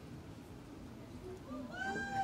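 A high-pitched whooping cheer from a person in the audience. It starts near the end, rises in pitch and is held for under a second, over low room murmur.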